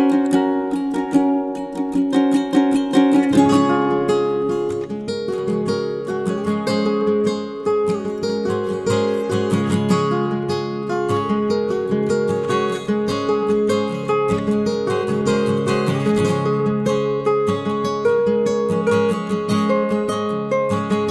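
Instrumental background music led by plucked strings, with a steady rhythm of picked notes; a lower part joins about three and a half seconds in.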